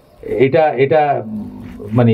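A man's voice through a microphone, speaking forcefully: a drawn-out word with a sliding pitch about a third of a second in, trailing off more quietly toward the end.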